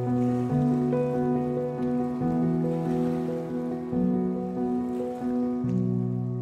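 Background music: sustained chords over a bass note that changes about every second and a half.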